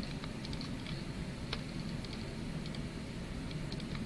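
Scattered light clicks of a computer mouse and keyboard, a few irregular clicks over a low steady hum.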